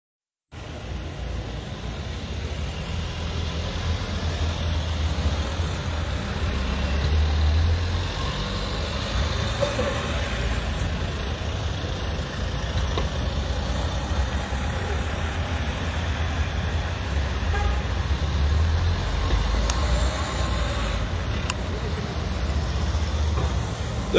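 Street traffic: cars, a van and a motorcycle passing close by, a steady low rumble of engines and tyres that swells a couple of times as vehicles go by.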